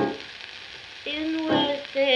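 78 rpm shellac record playing a female vocal with piano accompaniment: a sung note ends at the start, leaving about a second where mainly the record's surface crackle is heard, then the voice comes in again about a second in.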